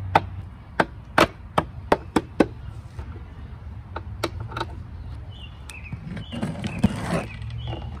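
Hammer blows on an opened NP231 transfer case: about seven sharp strikes in quick succession over the first two and a half seconds, then a few lighter knocks. Near the end the transfer case's drive chain rattles as it is lifted out with its sprockets.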